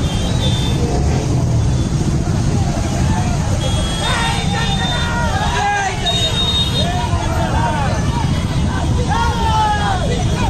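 Dense rally traffic: many motorcycle engines running together under a crowd's shouting. The shouting grows louder and more insistent from about four seconds in.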